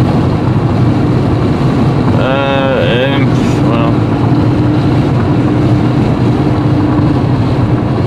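Steady in-cabin road noise of a car driving at highway speed: a continuous low drone from the engine and tyres, with a steady hum. A brief voice sound comes about two seconds in.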